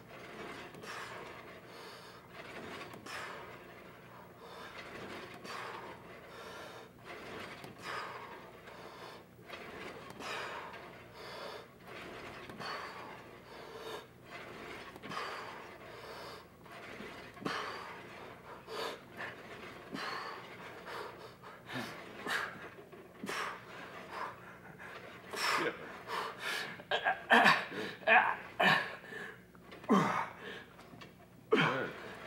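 A man breathing hard and panting through repeated reps on a weight machine, the breaths growing louder and more frequent near the end of the set.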